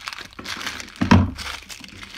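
Plastic soap packaging crinkling and crackling as it is handled and opened, with irregular bursts and the loudest crackle about a second in.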